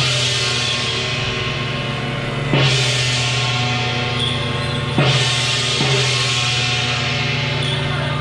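Temple-procession percussion: a steady drum roll with loud crashes of cymbals and gong, once about a third of the way in, then twice close together past the middle, each ringing away.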